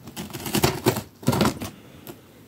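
Scissors cutting through plastic packing tape on a cardboard box, a crackling run of cuts in two main bursts, the second about a second and a half in.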